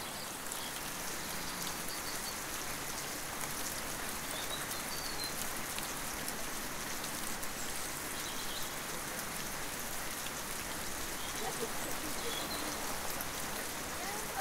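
Steady monsoon rain falling, an even continuous hiss, with a few faint high chirps.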